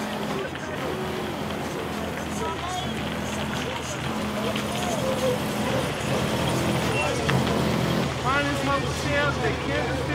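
An older sedan's engine running as the car drives slowly through a parking lot, a steady low hum, with muffled voices over it.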